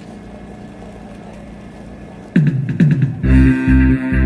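A low steady hum from the sound system, then about two and a half seconds in a backing track starts through the PA: two falling bass slides, then a loud steady beat with guitar and bass.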